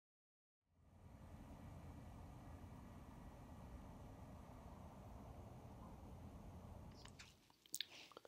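Very faint, low steady rumbling noise that fades out shortly before the end, followed by a few sharp clicks.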